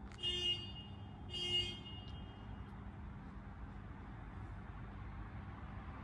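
Two short horn toots about a second apart, over a steady low hum.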